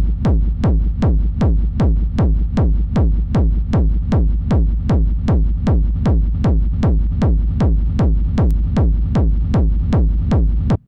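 Distorted hardstyle gated kick drum looping, about two and a half kicks a second. Each kick is a heavy low thump that falls in pitch into a rumbling reverb tail. The kick runs through a limiter, and its tail is shaped by volume automation.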